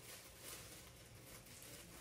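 Near silence, with faint rustling of tissue paper being pinched and gathered by hand.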